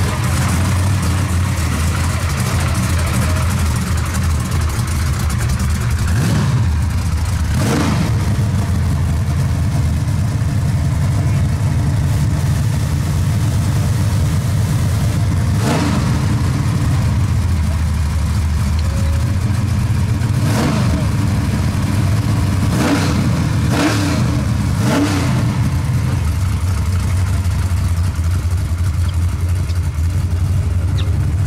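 Oldsmobile Cutlass drag car's engine idling with a low rumble, blipped with about seven short revs: two early on, one near the middle and a quick run of four in the second half.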